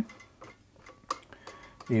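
Quiet handling with faint ticks and one sharper click about a second in, as fingers turn the plastic stop-motion clutch knob on the hand wheel of an Elna Star Supermatic sewing machine. Turning the knob does nothing to the drive: it has been unscrewed too far and is clamped against the circlip on the shaft.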